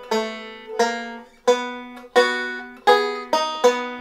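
Five-string banjo picked slowly with thumb and fingers: about seven separate notes and pinches, each ringing out and fading, walking up to a barred B chord.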